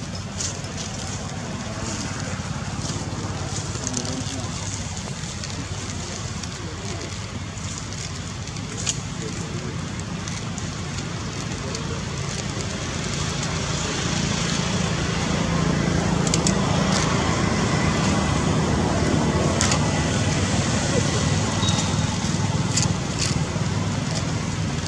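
Outdoor background noise: a steady low rumble of road traffic that grows louder about halfway through, with indistinct voices mixed in.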